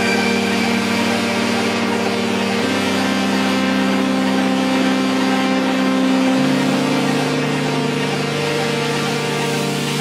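Electronic music: held synthesizer tones with no drum beat, moving to new notes about three seconds in and again at about six and a half seconds.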